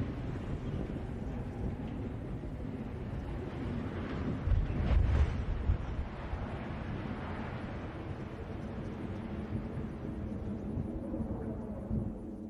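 Low rumble of a power-plant smokestack toppling in an explosive demolition, with a louder heavy impact about five seconds in as it comes down, and wind on the microphone.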